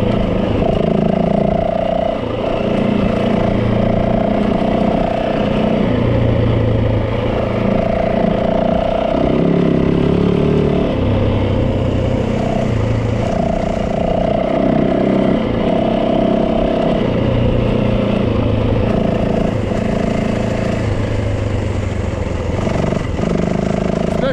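Yamaha 450 dirt bike's single-cylinder four-stroke engine running while riding along a dirt trail. The engine note steps up and down every second or two as the throttle is opened and eased.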